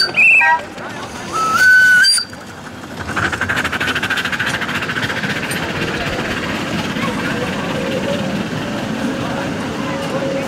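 Whistle of a miniature live-steam locomotive blown twice: a short blast right at the start and a longer one about a second and a half later. After that comes a steady, fast rhythmic running sound as the little engine moves off.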